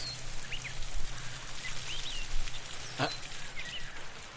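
Small birds chirping briefly every half second or so over a steady hiss of water spraying from a garden hose. One sharp click sounds about three seconds in.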